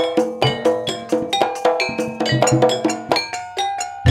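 Javanese gamelan playing, with rows of bonang kettle gongs struck with mallets in a quick run of ringing notes at several pitches. The notes thin out briefly near the end.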